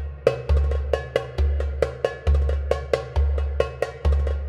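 Background music: a percussion-led track with quick, bright pitched hits over a deep bass note that changes about once a second.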